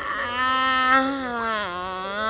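A woman's voice holding one long wailing note into the microphone, dropping in pitch a little past halfway.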